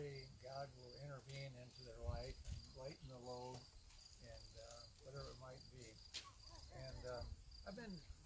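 Crickets chirping in a steady, high pulsing trill, with faint speech underneath.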